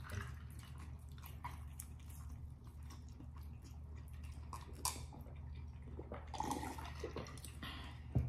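Close-miked drinking and eating mouth sounds: soft sips and gulps of soda from a glass mug, with scattered small wet clicks, over a steady low hum.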